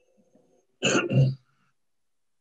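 A man clears his throat once, a short two-part sound about a second in.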